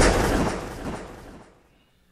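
The decaying tail of a booming hit that closes the intro music. It fades away steadily over about a second and a half.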